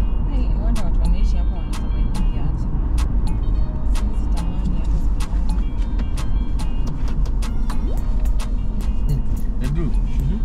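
Steady low rumble of a vehicle's engine and tyres on a wet road, heard from inside the cabin. Many sharp, irregular ticks run over it, fitting raindrops striking the windscreen.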